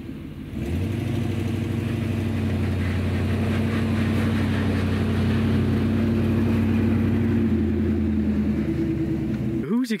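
Old Chevrolet Suburban driving past on a dirt road, its engine running at a steady pace. The sound cuts off just before the end.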